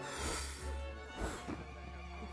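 Film-score music with guests blowing out candles: a breathy puff at the start and another just past the middle.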